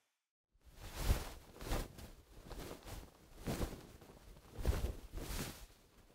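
Gentle cloth-movement Foley (acrylic and cloth rustles from the Clothes & Materials Foley Library Vol. 2) generated live by Reformer Pro from a microphone input. A run of soft rustling swishes swells and fades about six times.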